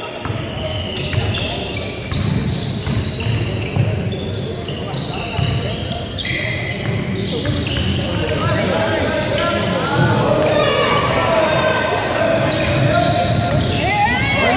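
A basketball being dribbled on a hardwood gym floor, with players' and spectators' voices echoing in a large gym. From about halfway through, many short sneaker squeaks are mixed in as the players move.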